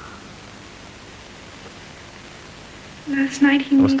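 Steady, faint hiss of background noise with nothing else in it; a voice begins speaking about three seconds in.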